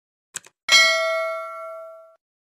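Subscribe-button animation sound effect for the notification bell: two short clicks, then a bright bell ding that rings out and fades over about a second and a half.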